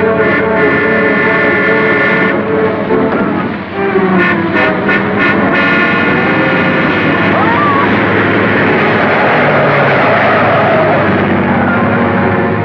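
Dramatic orchestral film score mixed with a car's engine and road noise. There are sustained chords in the first seconds and a quick run of short hits about four to five seconds in, then a denser rushing noise for the rest.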